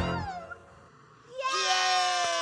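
A character's voice from a children's TV show: a falling cry right at the start, a short lull, then a long drawn-out cry that rises and holds near the end, leading into cheers of "Yay!"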